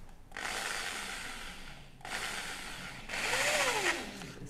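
Corded electric drill with a screwdriver bit driving a screw into white WPC (wood-plastic composite) board, run in three bursts, the first the longest.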